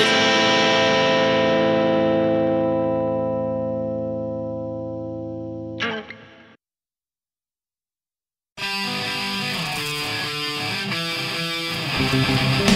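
Skate-punk song ending on a final distorted electric-guitar chord that rings and slowly fades, cut off by a short noise about six seconds in. After two seconds of silence the next punk-rock song starts at full volume with distorted guitars and a full band.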